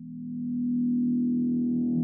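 Riser preset from the Candyfloss sample-based virtual instrument for Kontakt: a low sustained synth-like tone swells in over about a second, then holds while it grows steadily brighter.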